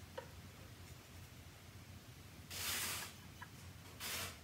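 A paint brush swept once across watercolour paper, a scratchy stroke about half a second long a little after the middle, with a faint tick of the brush meeting the paper at either side. A low steady hum runs underneath.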